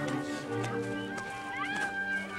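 Film score music with held chords, and a few short rising sounds near the end.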